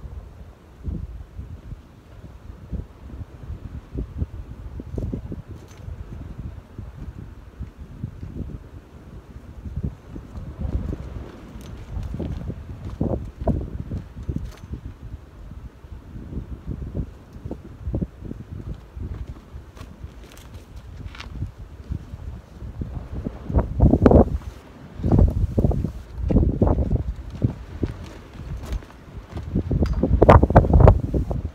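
Strong gusting wind buffeting the microphone, a low rumbling noise that rises and falls irregularly, with the heaviest gusts about six seconds before the end.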